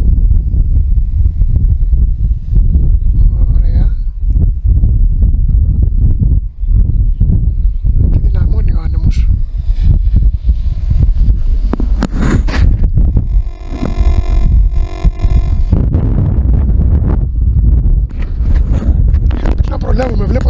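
Strong, gusty wind buffeting the microphone: a loud, continuous low rumble.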